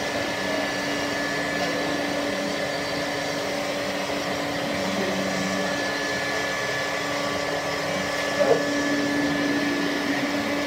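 ShopBot CNC router running a cut into a painted wood board: the spindle motor and the dust-collection vacuum make a steady noise with a constant hum. There is a brief louder blip about eight and a half seconds in.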